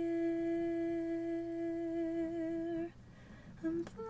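A woman's soft voice humming one steady note for about three seconds, then a short pause with a brief note and a click before the next phrase. Fingers rub the foam microphone cover with a faint low rustle.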